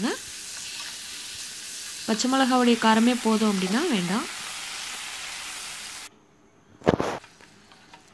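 Potato masala sizzling in a non-stick kadai while being stirred with a wooden spatula, a steady hiss of frying. The sound cuts out about six seconds in, and a single short loud noise follows about a second later.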